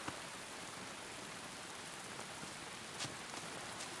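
Steady, soft rain falling, an even hiss with a few louder single drops ticking now and then.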